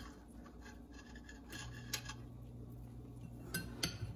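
Two metal spoons scraping against each other as dumpling dough is pushed off one spoon with the other, with a few light clicks. A low steady hum comes in partway through.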